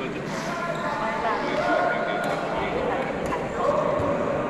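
Wheelchair tyres squeaking in short gliding chirps on a wooden sports-hall floor as players turn and push during a badminton rally, with a couple of sharp racket-on-shuttlecock hits and voices carrying around the hall.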